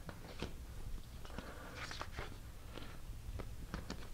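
Faint scattered clicks and a brief rustle of plastic pieces being handled at a hanging demonstration chess board, over low room hum.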